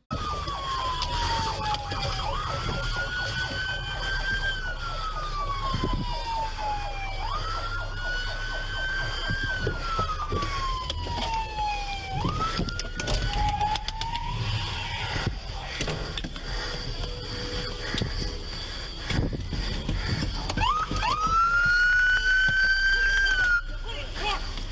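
Police car siren wailing, its pitch sweeping slowly up and down over several seconds per cycle, heard from inside the patrol car over low engine and road rumble. The wail drops out about halfway through and starts again near the end.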